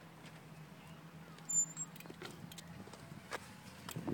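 Handling noise from a recording camera being picked up and moved: a few light, scattered clicks over a faint, steady low background hum.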